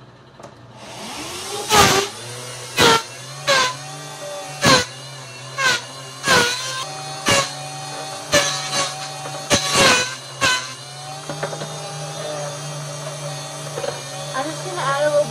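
Electric milkshake blender starting about a second in and running steadily through a thick mix of ice cream, milk and chocolate syrup. About a dozen sharp knocks come over the next nine seconds, then stop while the motor keeps running.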